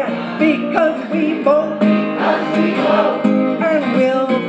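A live folk song: two acoustic guitars strummed together, with a sung vocal line over them.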